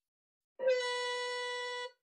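A workout timer web app's end-of-round alert sound playing through the computer: one steady tone that starts about half a second in, lasts about a second and a quarter, and is cut off abruptly when the app's script pauses it after 1300 ms. It marks the end of round one and the switch to rest.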